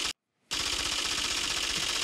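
A rapid, even mechanical rattle, an edited sound effect. A short burst opens, then comes a half-second break, then a steady run of the rattle.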